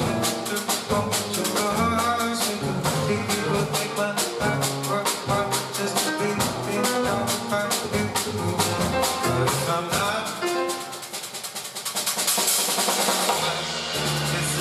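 Jazz piano trio playing with no vocals: grand piano, plucked upright bass, and a Yamaha drum kit keeping steady time on the cymbals. About ten seconds in the playing drops back briefly, then a cymbal wash swells near the end.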